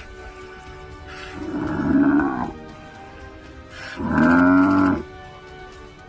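Two loud, deep, drawn-out animal calls, each lasting about a second, one near the middle and a louder one near the end, over background music.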